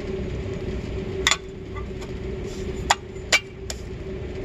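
Steel sonde-housing cover on a directional drill head being fitted in place: a metal clunk about a second in, then three sharp metal knocks close together near the end, over a steady background hum.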